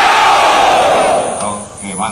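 A large group of soldiers shouting together in unison, one long yell that falls in pitch and dies away about a second and a half in.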